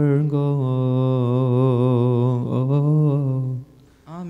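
A priest's low male voice chanting a Coptic liturgical melody with no clear words, holding long wavering melismatic notes. There is a brief break for breath about two and a half seconds in, and the voice stops just before the end.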